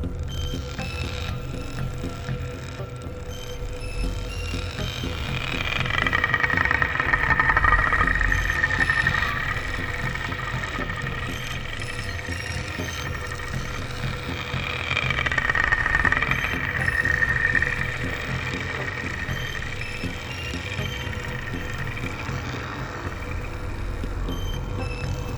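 Ambient space music: a steady low rumble with a constant hum underneath. A wavering high tone swells up and fades away twice, about five and about fourteen seconds in, each time for a few seconds.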